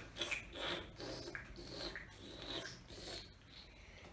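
Olive oil slurped from a tasting cup: a series of short, hissing sucks as air is drawn in through the teeth over the oil in the mouth, the way oil tasters aerate a sample.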